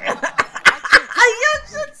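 A woman laughing in a run of short, loud bursts over the first second and a half, with faint speech from the show underneath.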